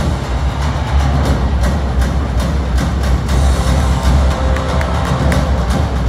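Loud music with a heavy, steady bass, played over an arena's sound system.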